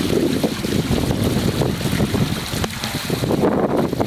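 Wind buffeting the microphone over water rushing past the hulls of a small sailing catamaran under way.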